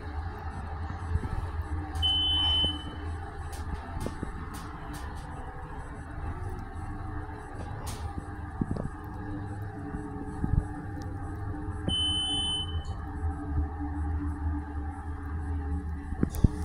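Schindler hydraulic elevator car in motion, with a steady low hum. Two short, high electronic beeps sound from the car, about two seconds in and again about ten seconds later, with a few light clicks between.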